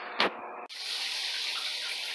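Shower head spraying water onto tiled walls, a steady hiss that starts about half a second in. It is preceded by a short sharp knock, the loudest moment.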